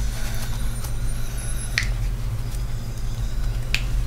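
A steady low hum with two short, sharp clicks about two seconds apart.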